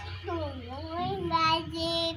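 A toddler's voice in a drawn-out, wordless sung call: the pitch slides down, rises again and is then held on one note through the second half.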